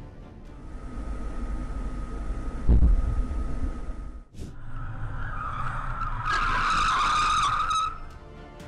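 Vehicle road noise with a heavy deep thud just under three seconds in. In the second half a high, wavering squeal like skidding tires builds and grows louder toward the end.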